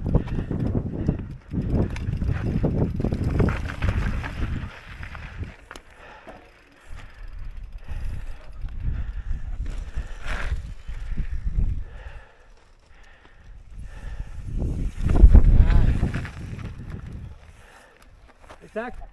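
Mountain bike riding over a dry dirt trail: tyre rolling and rattling noise with wind rushing over the camera microphone, rising and falling, loudest about fifteen seconds in.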